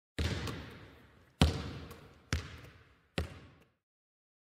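A basketball bouncing four times on a hard floor, each bounce echoing and dying away before the next, the bounces coming slightly closer together.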